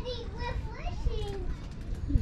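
A young child's high-pitched voice making drawn-out, gliding wordless sounds, over a low rumble.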